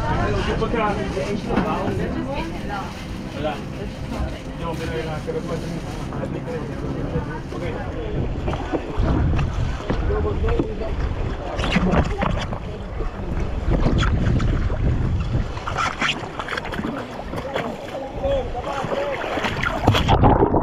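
Wind buffeting the microphone over indistinct voices aboard a sailing catamaran. From about halfway through come scattered splashes of snorkellers swimming at the water's surface.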